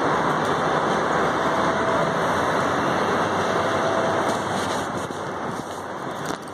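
Steady background noise, a dense hiss and rumble with a faint hum, easing off a little near the end.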